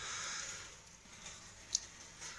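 Faint rustling of a gloved hand rubbing over the corroded hub of a cut-open washing machine drum, with one short sharp click near the end.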